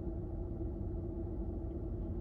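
Steady low rumble with a constant hum inside the cabin of a parked, running car.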